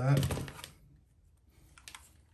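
A short spoken word, then near silence with a few faint, light clicks near the end as a small metal screw is handled and set down on a parts tray.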